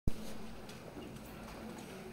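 A sharp click as the recording begins, then the light taps of several people's hard-soled shoes walking on a tiled floor, over a low room background.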